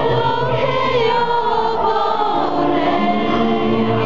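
Church congregation singing a worship song together, many voices holding long, drawn-out notes.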